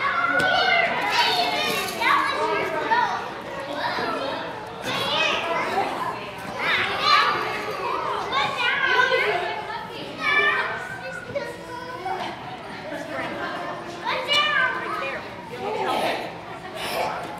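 Several young children's voices chattering, calling out and squealing over one another as they play, without a break.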